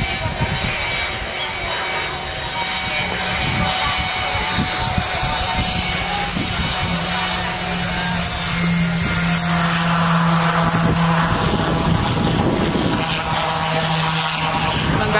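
Steady drone of an aircraft engine, mixed with a continuous rush of noise, growing a little louder about two-thirds of the way in.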